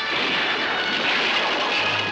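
A steady, dense noisy roar layered with sustained musical tones: an old film trailer's soundtrack, with music and effects mixed together.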